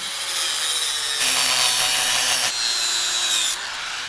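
Angle grinder cutting through the steel brake backing plate on a rear axle shaft: a steady, harsh grinding with a faint high whine. The sound changes abruptly about a second in and again past halfway, and the cutting stops shortly before the end.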